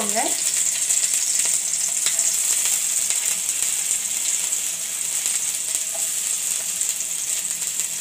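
Chopped garlic and green chillies sizzling in hot oil in a kadai: a steady high hiss that eases slightly toward the end. This is the tempering stage, with the aromatics frying in the oil.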